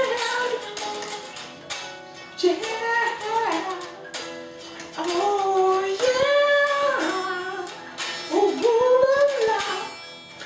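A man singing high, drawn-out notes that slide in pitch, over two electric guitars being played.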